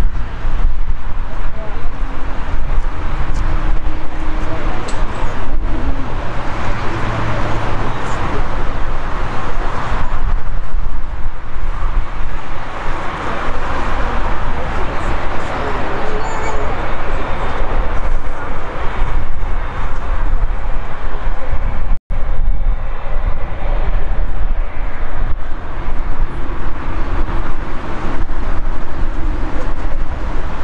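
Boeing 787-9 jet engines running at taxi power, a steady loud roar with a deep rumble underneath, swelling and easing at times. The sound drops out for an instant about two-thirds of the way through.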